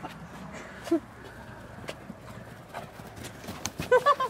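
Dogs galloping on grass, their paws thudding on the turf in quick irregular knocks, with a short vocal sound about a second in and a cluster of louder thumps near the end.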